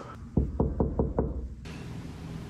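Five quick knocks on a door, about five a second, starting about a third of a second in.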